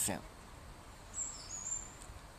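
A man's voice finishing a word, then a pause of low room noise in which faint, high-pitched chirps sound about a second in.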